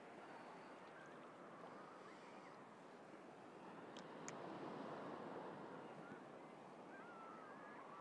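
Faint, steady wash of calm, shallow seawater around a person wading, a little louder about halfway through. There are two small clicks about four seconds in.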